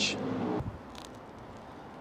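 The crust of a warm plain bagel crackling as it is torn apart by hand, a short noisy crunch lasting about half a second. Faint street background follows.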